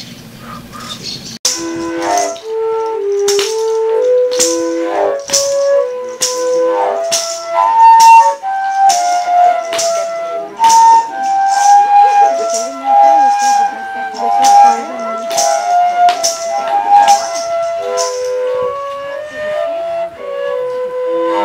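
Yapurutu, the long Desano/Tukano flutes, played by several players at once: held, overlapping notes moving in a repeating melody. The playing starts abruptly about a second and a half in, with a sharp beat about every three-quarters of a second throughout.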